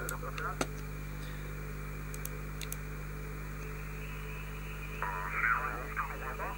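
Steady hiss from a software-defined receiver's single-sideband audio output, with a ham operator's voice from the received signal coming through faintly near the start and again about a second before the end, not yet fully tuned in.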